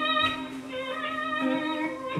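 A band jamming live: sustained chords over a steady held low note, with the upper notes shifting a few times.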